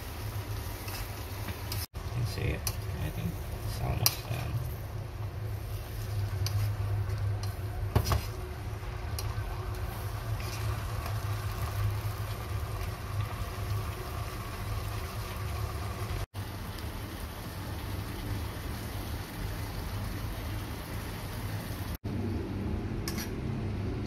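A stir-fry of chicken, tomato and onion being stirred in a small saucepan over a lit gas burner. There is a steady low hum, with a few sharp knocks of the utensil against the pan, the loudest about four and eight seconds in.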